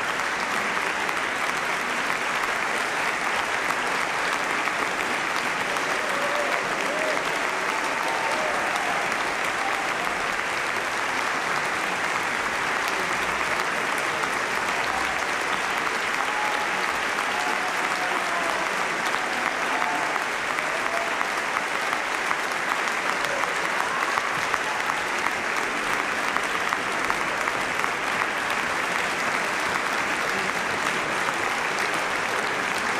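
A large audience applauding steadily, with a few voices calling out above the clapping.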